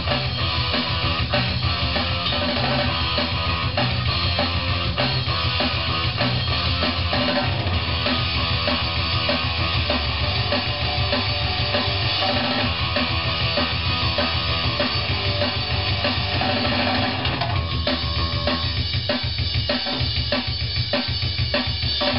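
Hardcore punk music with distorted guitars over a loud drum kit, heard in a studio control room. A little over three-quarters of the way through, the guitar wash thins out and the drum hits stand out more plainly.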